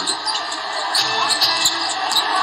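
A basketball being dribbled on a hardwood court, bouncing repeatedly over a steady background of arena crowd noise.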